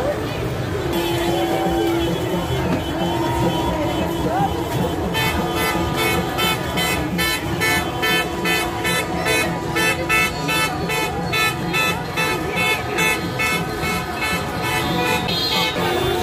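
Vehicle horns honking in rapid, rhythmic repeated toots, starting about five seconds in and stopping just before the end, over the noise of a large street crowd. A longer, lower held horn note sounds in the first few seconds.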